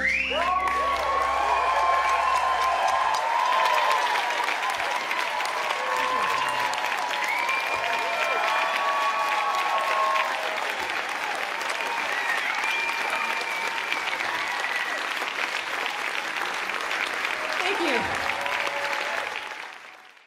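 Concert audience applauding and cheering, with whoops rising above the clapping. The band's last chord rings out for the first few seconds, and the applause drops away quickly near the end.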